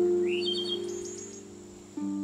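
Slow harp music: a low chord is plucked at the start and rings on, fading. A small songbird chirps high above it in the first second.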